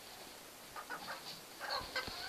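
Domestic hens clucking quietly, a few short soft clucks in the second half, with a dull thump near the end.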